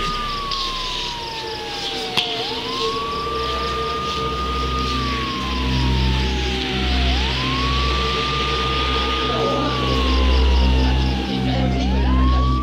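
Police siren wailing: the pitch climbs quickly, holds, then slides slowly down, repeating about every five seconds, over a low rumble.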